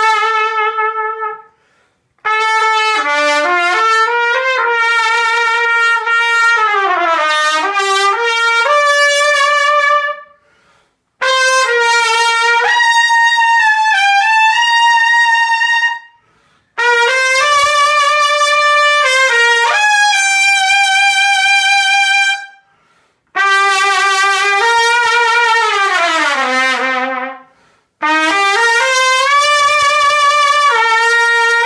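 Andalucia AdVance Series large-bore trumpet played solo and unaccompanied: phrases of quick runs rising and falling, with some held notes, each phrase a few seconds long and cut off by a short break for breath.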